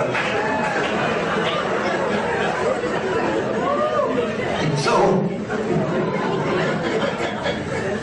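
Audience in a large hall talking among themselves, many voices overlapping at once, with a brief louder burst about five seconds in.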